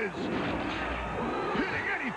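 Cartoon battle sound effects: booming blasts with a low rumble swelling around the middle, mixed with several short sliding cries.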